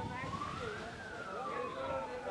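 An emergency vehicle's siren in a slow wail, rising in pitch over the first second and then falling slowly, with voices of a crowd behind it.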